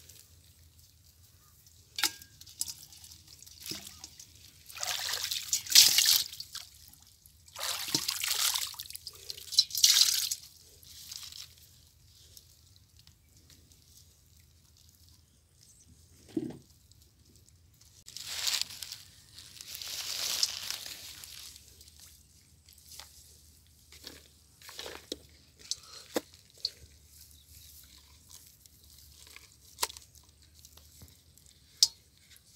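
Water dripping and splashing in irregular short bursts as small fish are picked by hand from a wet bamboo-framed fishing net and dropped into a pot of water, with a few sharp clicks in between.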